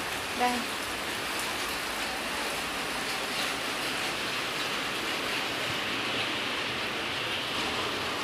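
Rain falling steadily: a continuous even hiss.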